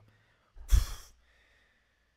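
A single short, loud exhale, like a sigh or laughing puff of breath, blown into a close microphone about half a second in. It lasts about half a second, with a strong low thump of air hitting the mic.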